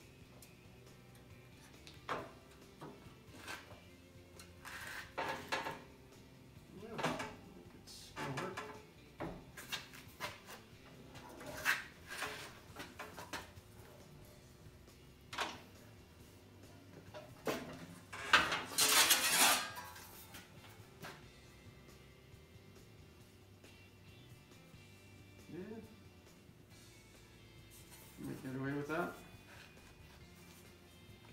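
Manual sheet metal brake in use on an 18-gauge steel panel: scattered clanks and knocks from the clamping handle, bending leaf and sheet, with a longer, louder metallic rattle about two-thirds of the way through.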